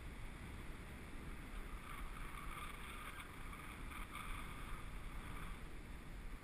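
Wind rushing over the camera microphone of a skydiver descending under canopy: a steady low rumble with a faint hiss.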